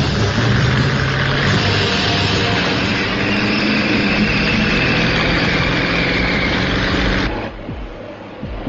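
Vehicle engines, including a heavy truck, running hard at speed with a steady drone and road noise, in a film soundtrack mix. The sound drops off suddenly about seven seconds in.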